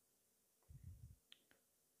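Near silence: room tone, with a few faint soft thumps a little under a second in and two small clicks soon after.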